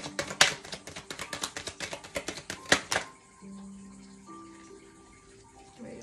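A deck of tarot cards shuffled by hand: a rapid run of card flicks and slaps for about three seconds, then it stops. After that, soft background music with long held notes.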